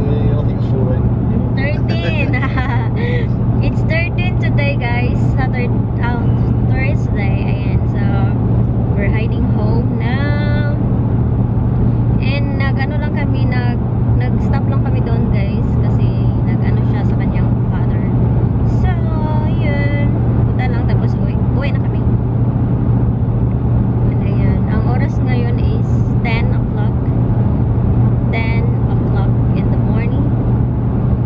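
Steady road and engine noise inside a moving car's cabin, a low even drone that runs under a woman talking.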